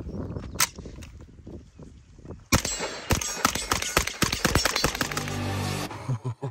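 A single sharp crack less than a second in, then from about two and a half seconds a rapid string of gunshots. Near the end it gives way to a music sting with a deep steady bass tone.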